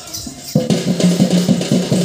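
Folk drum beaten in a quick, even run of strokes, about five a second, with a ringing low pitch. It starts suddenly about half a second in.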